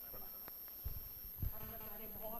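A quiet pause in a hall: faint background voices, with two short dull thumps a little under a second in and halfway through.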